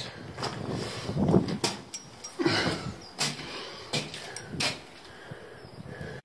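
Footsteps in wellington boots scuffing over a rubble-strewn concrete floor, with irregular scrapes and a few sharp knocks, inside a narrow concrete bunker passage.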